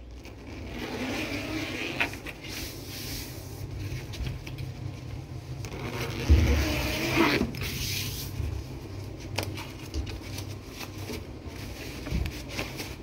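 Cloth rustling and scraping as a fabric cover is handled and folded, over a steady low rumble, with a few light knocks; the loudest rustle comes about six seconds in.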